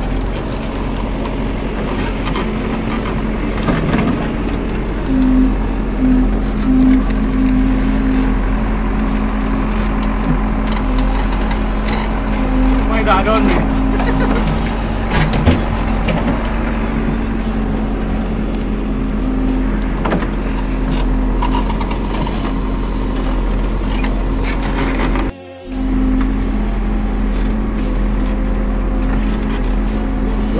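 JCB 3DX backhoe loader's diesel engine running steadily while the operator works the backhoe arm, its note swelling and easing on and off. The sound cuts out for a moment about three-quarters of the way through.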